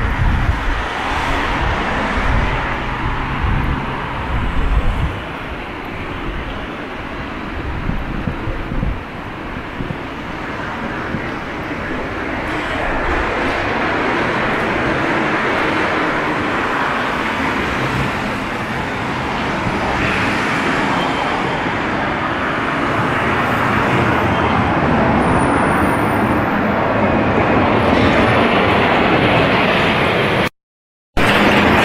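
Road traffic on a busy multi-lane street: the steady tyre and engine noise of passing cars, growing louder through the second half.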